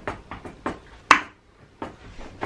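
A few short, sharp knocks and clicks from the spinning wheel dartboard and the dart striking it, the loudest a little over a second in.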